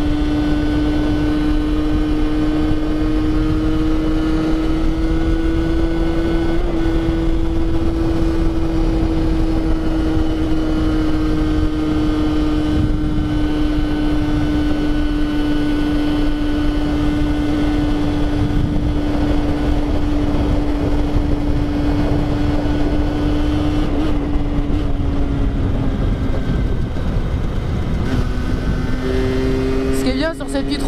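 Rieju MRT 50cc two-stroke single, with its stock exhaust derestricted, running at steady high revs while cruising, over wind noise on the microphone. The pitch eases down and shifts a few seconds before the end.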